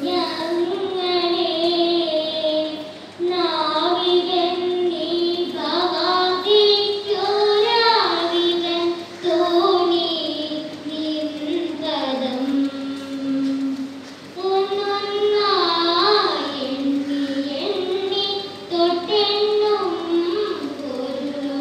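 Children singing a slow melody in long, held notes, with short breaks between phrases.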